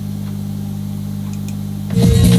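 A steady, unchanging low electrical hum, typical of a sound system idling with its amplifier on; electronic dance music cuts in right at the end.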